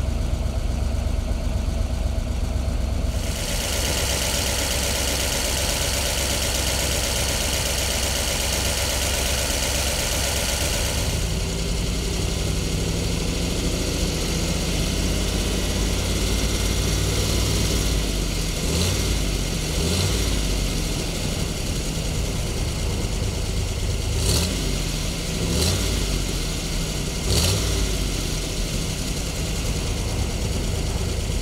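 A 1967 Corvette's 427 cubic inch, 435-horsepower Tri-Power big-block V8 idling, with a steady hiss over it for the first third. In the second half come a few short revs, the last two the loudest.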